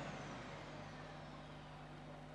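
Faint, steady hum of a bus's engine and road noise heard inside the cabin.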